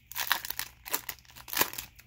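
Foil wrapper of a Pokémon trading card booster pack crinkling as it is torn open and the cards are pulled out: a run of irregular crackles.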